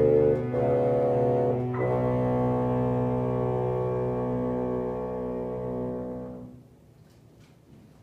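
Cello, bassoon and piano trio playing slow, held closing chords, changing chord twice in the first two seconds, then dying away and ending about six and a half seconds in.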